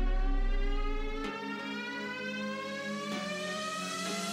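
Background electronic music at a build-up: a synth tone with its overtones rises steadily in pitch like a riser sweep, and the bass drops out about a second in.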